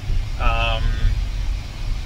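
Steady low rumble inside a Tesla's cabin, with a man's brief drawn-out "uh" about half a second in.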